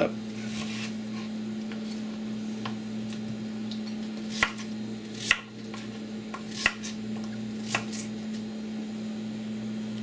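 A ceramic knife cutting peeled chayote on a plastic cutting board, with a few separate chopping strikes about a second apart, the loudest between about four and eight seconds in. A steady low hum runs underneath.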